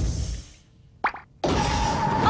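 Cartoon sound effects: a low rumbling thump at the start, a short rising chirp about a second in, then a loud rushing whoosh with a steady whine from about a second and a half, the sound of a vortex sucking things down through the floor.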